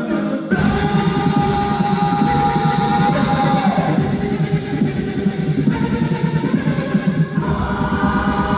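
Mixed choir singing through stage microphones, with a busy rhythmic low part under the voices. A single high note is held from about half a second in until nearly four seconds.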